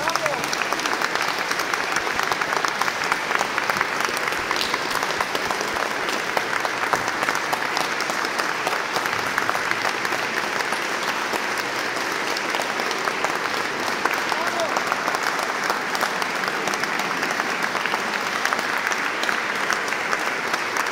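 Audience applauding in a church, a dense steady clapping.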